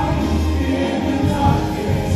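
Live contemporary worship music: a praise band of voices, guitars, keyboard and drums playing and singing, over a steady low bass.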